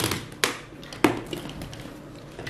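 Speaker cables and the small wired control pod being handled and set down on a tabletop: three sharp taps in the first second, then a few fainter ones.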